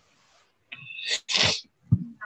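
A person sneezing once, about a second in: a short high-pitched intake, then a sharp, noisy burst of breath. A low thump follows near the end.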